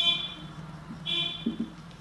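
Marker pen writing on a whiteboard, squeaking in two short high-pitched squeals, one at the start and another about a second in, with soft scratching strokes between.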